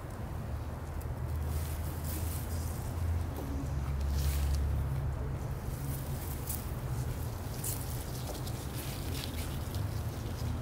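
Freshly cut long grass rustling as handfuls are laid out over a rifle on a plastic sheet: a string of short, crisp rustles over a steady low rumble.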